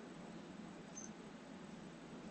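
Very quiet room tone in a lecture room: a faint steady hiss with one tiny high tick about halfway through.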